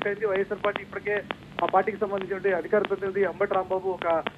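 Speech only: a person talking steadily.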